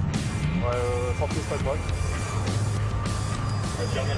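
Car engine and road noise at high speed, heard from inside the cabin as a steady low drone, with background music over it.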